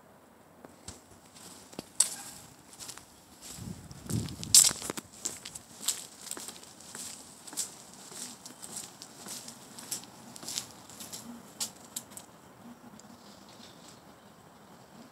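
Footsteps on a concrete walkway, short scuffing steps at about two a second, with a louder rustling burst about four seconds in.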